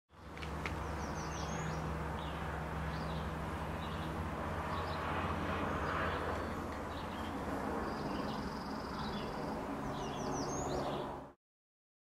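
Songbirds chirping and calling, with one longer trill about eight seconds in, over a steady low hum; the sound cuts off suddenly near the end.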